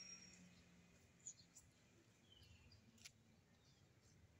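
Near silence, broken by a few faint, brief bird chirps and two small clicks, one just past a second in and one about three seconds in.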